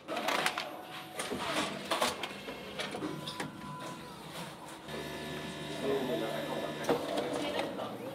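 Automated pharmacy dispensing robot at work: mechanical clicks and knocks, then a steady motorised whirring hum from about five seconds in as the medicine packs are moved along its chute and conveyor.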